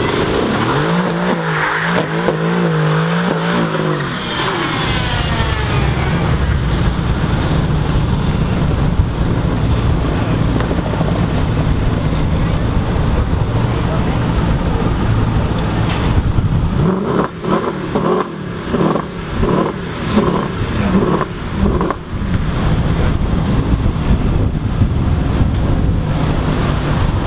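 Mercedes-AMG GT R's V8 held at high revs with its rear tyres spinning in a burnout, a loud continuous mix of engine and tyre noise with rising pitch sweeps early on. For a few seconds past the middle a voice talks over it, and near the end another car's engine is heard.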